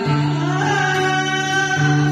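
A Vietnamese song sung with instrumental accompaniment: the singing voice holds a long note that glides upward, over a steady held bass note.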